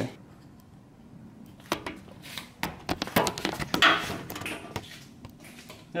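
Irregular small clicks and knocks with a brief scrape, from hands and camera handling against a car's front-end trim and fasteners while reaching in for the bumper's retaining nuts.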